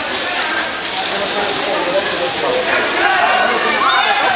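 Water splashing from water polo players swimming in a pool, mixed with voices calling across the pool hall.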